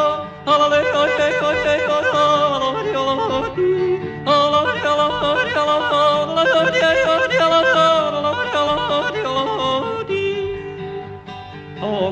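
Male country yodeling: the voice leaps quickly back and forth between low and high notes, over steady instrumental backing, with short breaks about half a second in and again near 4 s.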